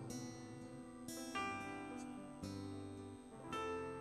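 Soft instrumental accompaniment to a Spanish gospel hymn: held chords on keyboard, with new chords entering a few times, in a short break between sung lines.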